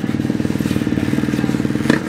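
Dirt bike engine running steadily at an even speed. There is a sharp click near the end.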